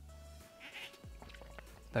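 A quiet sip from a cocktail glass: a brief soft slurp a little over half a second in, over faint background music.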